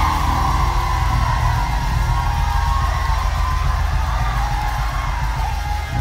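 Church band music with bass and drums, under a congregation shouting and cheering. It dies down near the end.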